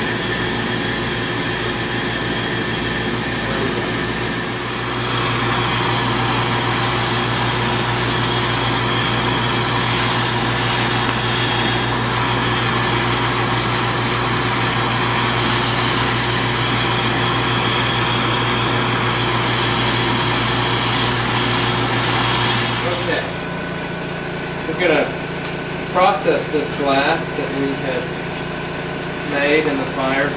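Steady roar of gas crossfire burners as neon glass tubing is heated and welded in the flames. The roar grows louder about five seconds in and cuts off suddenly a little over twenty seconds in, leaving quieter room noise and a few brief voice sounds near the end.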